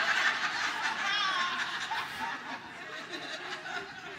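Congregation laughing at a joke, loudest at first and dying down after about two seconds.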